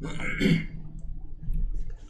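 A man's voice briefly in the first half second, then a few faint clicks.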